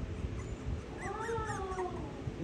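A dog whining once, a wavering call just under a second long that starts about a second in.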